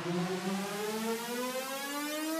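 A synthesized siren-like tone over a hiss, opening a reggae track, its pitch climbing slowly and steadily upward.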